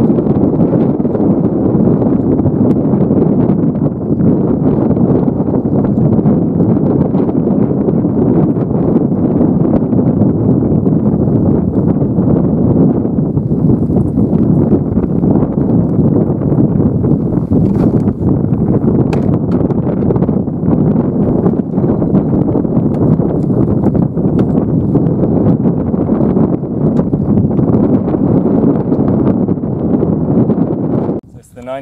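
Wind buffeting the microphone: a loud, steady, gusty rush.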